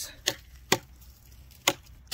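Timber Wolf TW1186 Bowie knife blade chopping into a log: three sharp whacks, the middle one the loudest.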